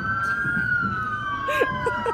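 Two emergency-vehicle sirens wailing at once in a parade, their pitches slowly gliding, one rising while the other falls.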